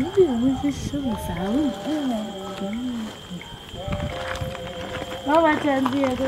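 Speech: women talking in a local language, the voice climbing to a high, excited pitch near the end, over a steady high thin tone.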